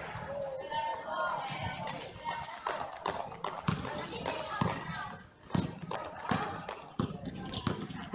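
A basketball being dribbled on a hard outdoor court, with repeated sharp bounces a little under a second apart.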